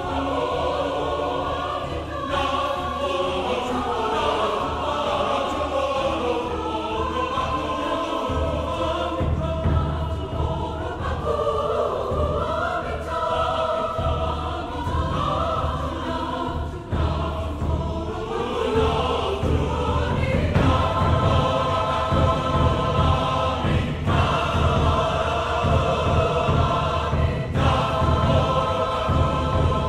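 Large mixed choir singing a slow line in Somali, with low drums pulsing beneath. The drums strengthen about a third of the way through and the whole choir grows louder later on.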